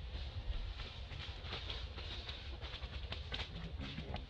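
Outdoor background noise: a low, uneven rumble with faint scattered clicks and rustles above it.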